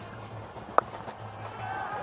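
A single sharp crack of a cricket bat striking the ball, about a second in, over low stadium background sound.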